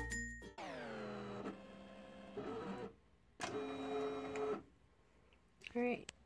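Background music cuts off about half a second in. Then a Silhouette electronic cutting machine's motors make a falling whine, followed a couple of seconds later by about a second of steady motor hum as the cutter works the mat.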